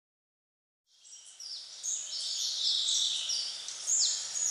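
Silence, then after about a second a high-pitched chorus of many birds chirping and trilling fades in and grows steadily louder.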